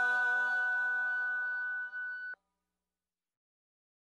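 Background music ending on a long held chord that fades slowly, then cuts off suddenly just past halfway, leaving silence.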